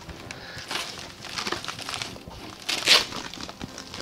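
Fabric-covered folding panels of a collapsible photography lightbox being unfolded, rustling and crinkling, with a louder rustle about three seconds in.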